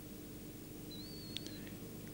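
Room tone: a steady low hum and hiss with no speech. About a second in, a faint, wavering high whistle lasts roughly half a second, with a soft tick near its end.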